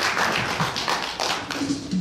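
Audience applauding, many hands clapping irregularly, with music starting to come in near the end.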